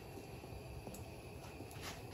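Faint steady hiss from a lit gas stove burner under a nonstick pan of shredded cheese that is just starting to heat, with a couple of soft ticks.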